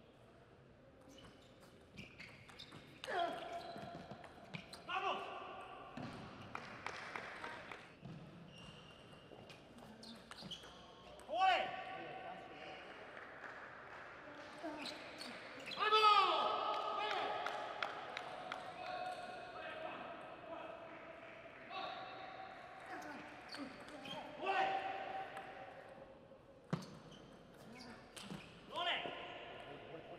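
Table tennis rallies: a celluloid-type ball clicking off bats and the table in quick exchanges, with loud shouts from the players after points, several times, in a large hall.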